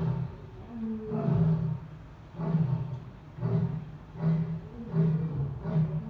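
Asian lion roaring: a longer roar followed by a run of short, deep roars about one a second, coming closer together and shorter toward the end, as at the close of a roaring bout.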